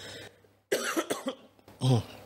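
A man coughing into his hand: a short fit of coughs starting a little before halfway, with another cough near the end.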